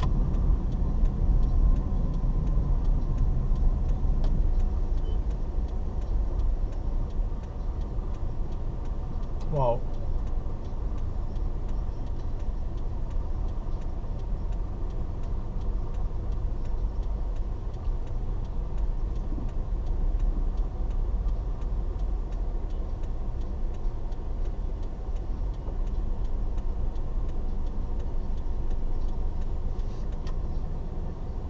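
Low, steady rumble of a car's engine and surrounding traffic heard from inside the cabin as the car stands in slow traffic. About ten seconds in, a brief pitched sound rises and falls.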